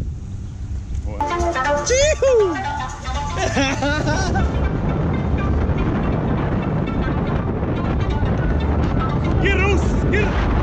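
Steady road and engine noise from a car being driven, taking over about four seconds in after a short stretch of laughter.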